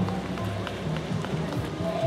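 Running footsteps of several race runners on a paved path, a few footfalls a second, over music playing in the background.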